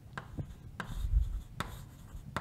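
Chalk on a blackboard: a few sharp taps and short strokes as marks are drawn, with a dull low knock about a second in.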